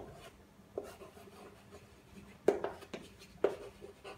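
Chalk writing on a chalkboard: short scratching strokes with sharp taps as the chalk meets the board, the loudest two about two and a half and three and a half seconds in.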